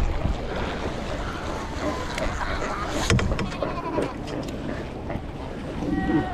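Cape fur seal colony calling with sheep-like bleats over wind buffeting the microphone, with a few sharp knocks from the kayak paddle about 3 and 4 seconds in.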